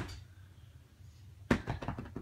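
A loud click fading at the start, then a quiet stretch. About one and a half seconds in comes a sharp click followed by a quick run of smaller clicks and taps.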